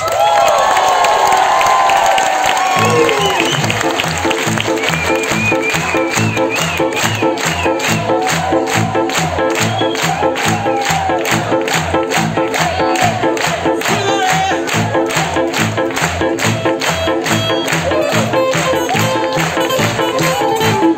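Live amplified band: a song ends and the crowd cheers, then about three seconds in the band starts the next number with a steady, even beat and a bass line.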